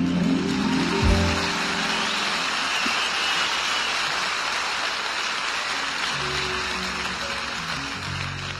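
A live band's song ends about a second and a half in, and a concert audience's applause fills the rest; soft band notes come back in under the applause near the end.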